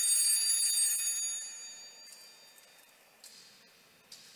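Altar bells rung at the elevation of the consecrated host: a bright, high ringing that dies away about two seconds in.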